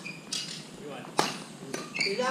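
Badminton rackets hitting a shuttlecock during a doubles rally: about three sharp smacks, the loudest a little past a second in.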